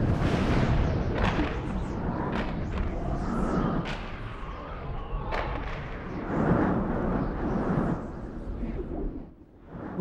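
Storm sound effects: dense rushing wind with deep rumbling and several sharp thunder-like cracks, swelling and easing in waves and dropping away shortly before the end.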